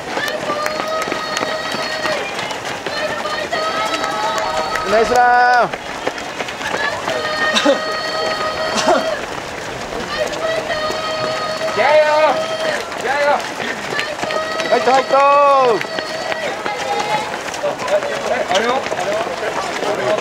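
Roadside spectators calling out drawn-out cheers to passing marathon runners, with a few sharper, louder shouts about five, twelve and fifteen seconds in, over the constant patter of many runners' footsteps on the road.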